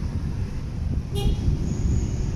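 Street traffic rumbling steadily, with a brief car horn toot a little over a second in.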